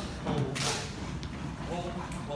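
Indistinct voices of people in a large dance studio, with one short sharp noise a little over half a second in.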